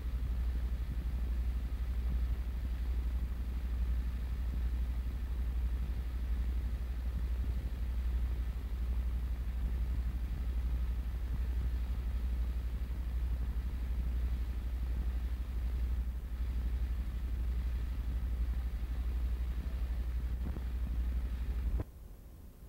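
Steady low electrical hum with a faint even hiss, the background noise of an old film soundtrack transfer, with no other sound on it; it drops away abruptly at the very end.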